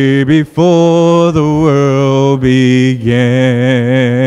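A man's voice singing a hymn a cappella into a microphone, in a run of long held notes with short breaths between them, the last note wavering with vibrato.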